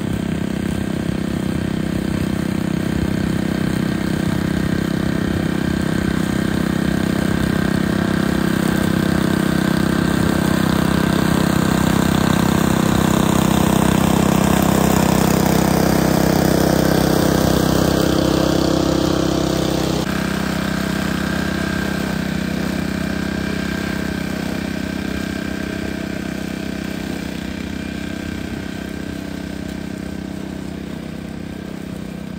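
Honda UM2460 walk-behind mower engine running steadily while cutting grass, growing louder as it comes close and dropping away about two-thirds of the way through, then fading as it moves off.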